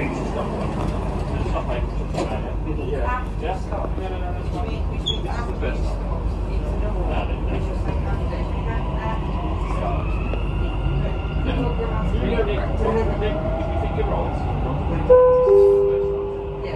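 Dubai Metro train heard from inside the carriage: a steady low rumble, with a rising motor whine from about ten seconds in as the train pulls away from the station and speeds up. Near the end a two-note falling chime sounds over the train's speakers.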